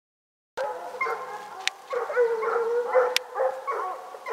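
Dogs howling and whining in drawn-out, wavering calls.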